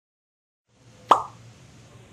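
A single sharp, short pop about a second in, over faint low room hum after the track starts from silence.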